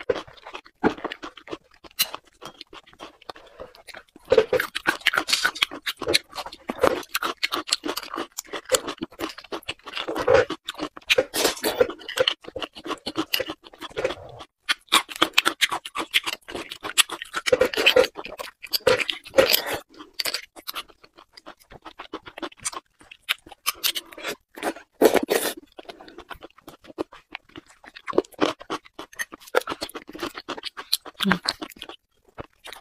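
Close-miked mouth sounds of chewing beef bone marrow, mixed with a thin stick scraping marrow out of the bone: a dense, irregular run of short clicks and smacks.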